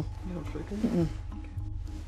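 A woman's voice making a short wordless vocal sound for about a second, over steady low background music.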